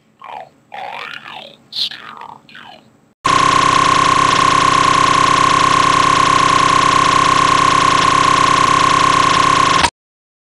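Short vocal noises for about three seconds, their pitch sliding up and down. Then, abruptly, a very loud, harsh, distorted steady beep buried in noise holds for about six and a half seconds and cuts off suddenly.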